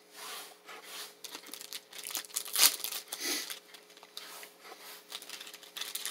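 Cereal bar wrapper being handled, crinkling in short irregular rustles, loudest about two and a half seconds in.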